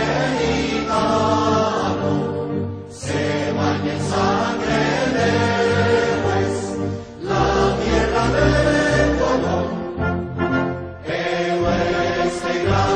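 A national anthem sung by a choir, in sung phrases of a few seconds with short dips between them.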